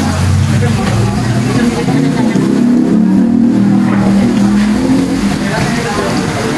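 Pork sizzling on a grill pan over a portable gas stove as it is turned with metal tongs, under a louder low droning sound that rises and wavers in pitch through the middle, with restaurant chatter.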